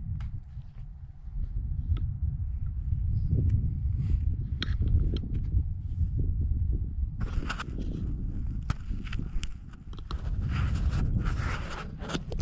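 Wind buffeting the microphone on an open mountain slope: an uneven low rumble that grows into stronger gusts with a hiss from about seven seconds in.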